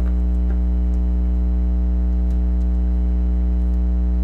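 Loud, steady electrical hum with a stack of overtones, unchanging throughout, with a few faint soft ticks of tarot cards being handled.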